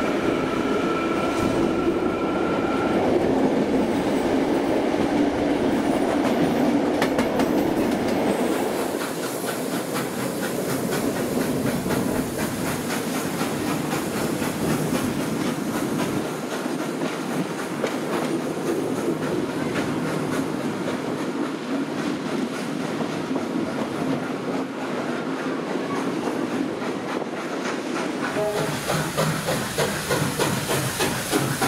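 Passenger train running at speed, wheels clattering over the rail joints, heard close up from an open carriage window. A high whine is heard in the first few seconds, and near the end the hiss of steam from a steam locomotive running alongside comes in.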